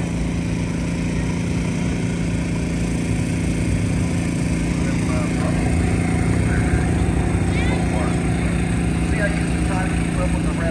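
A small engine running steadily at constant speed, an even low drone with a steady hum.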